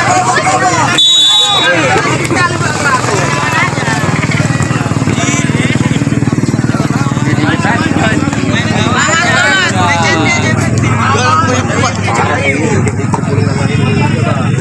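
Spectators' voices chattering over one another around a football pitch. A short, high whistle blast sounds about a second in, and a steady low drone runs underneath through the middle.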